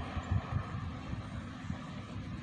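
Outdoor background noise: an uneven low rumble with a faint hiss above it, with no distinct events.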